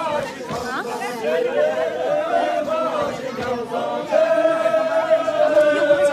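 A group of women singing together in unison, voices stretching out long notes, with one long note held over the last couple of seconds.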